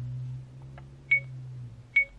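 Acumen XR10 rearview-mirror dash cam's touchscreen giving short high beeps as it is tapped: two beeps about a second apart, the second louder. Under them is a low steady hum that fades out shortly before the second beep.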